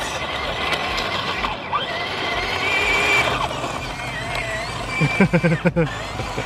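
Small RC drift tank running on gravel: a motor whine that rises and falls with the throttle over the crunch of its tracks on the stones as it spins donuts. A person laughs near the end.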